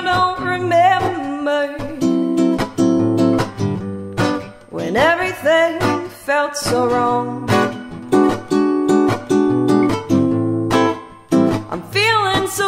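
Gut-string classical guitar played with a woman singing along, her voice wavering on held notes.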